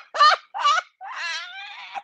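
A woman laughing hard in high-pitched bursts: three short ones, then about a second in a longer drawn-out laugh that ends abruptly.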